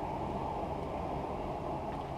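Steady low rushing hum of machine-like room background noise, unchanging throughout, with no speech.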